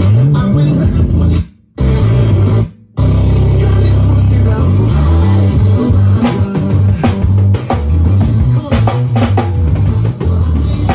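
Acoustic drum kit played along with a recorded song that has bass and guitar, the band stopping dead twice in quick succession about two seconds in before the groove comes back.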